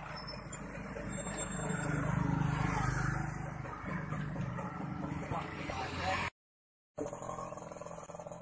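A man talking over a steady low hum. The sound cuts out completely for under a second near the end.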